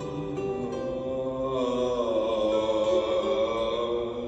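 Live acoustic ensemble with cello, acoustic guitar, mandolin and keyboard playing a slow song: long held notes under short plucked notes, swelling louder from about halfway through.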